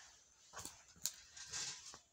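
Faint handling noise as a hand picks up a plastic ballpoint pen from a paper notebook: two light clicks, then a brief rustle near the end.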